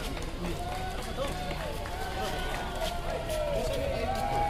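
Several people's voices talking and calling out over one another, some calls held for about a second, with no single clear speaker.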